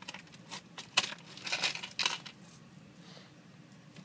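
Loose coins clinking and jingling as change is gathered up by hand: a quick cluster of sharp clinks over the first couple of seconds, the loudest about a second in.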